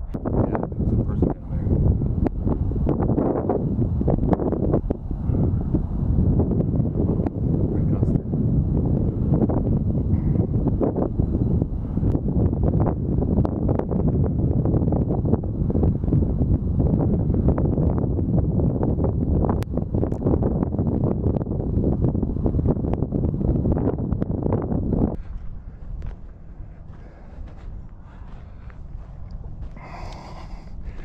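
Wind buffeting the microphone: a loud, gusty rumble with crackles, which drops suddenly near the end to a much quieter low wind rumble.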